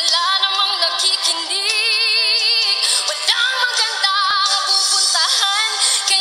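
A woman singing into a microphone, with melismatic runs and a long held note with wide vibrato about two seconds in.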